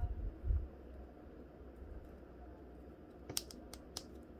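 Small plastic clicks from an S.H.Figuarts Frieza action figure as its arm joints are posed by hand. A low handling rumble comes near the start, then a quick run of three or four sharp clicks about three seconds in and one more at the end.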